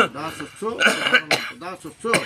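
Speech: a man's voice reciting in short phrases, in the cadence of Sanskrit mantras being spoken for another person to repeat.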